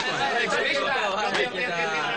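A group of men talking and calling out over one another in Japanese.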